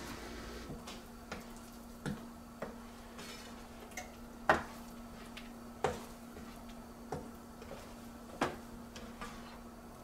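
A black kitchen spoon stirring thick tomato sauce in a stainless steel pan, knocking and scraping against the pan at irregular moments, roughly once a second. A steady low hum runs underneath.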